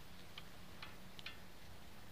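A few faint, sharp clicks, about four in two seconds, over a low steady hum.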